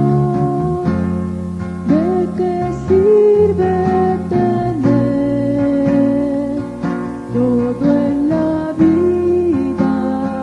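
Christian worship song: acoustic guitar with a voice singing a sustained, gliding melody that comes in about two seconds in.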